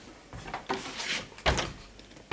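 Cabinet door being handled: a few knocks and clunks with some rattling, the loudest knock about one and a half seconds in.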